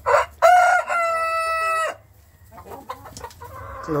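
Rooster crowing once: a short opening note, then a long held final note, about two seconds in all.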